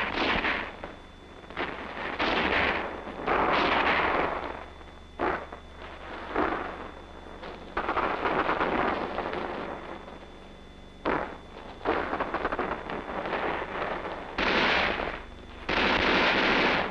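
Small-arms gunfire: rifle shots and bursts of automatic fire at irregular intervals, each trailing off in an echo, with a fast rattling burst about eight seconds in. It is a squad's heavy covering fire.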